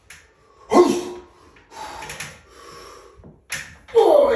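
A man's strained grunt about a second in, then hard breathing, as he does a weighted pull-up near his limit; a sharp click sounds near the end.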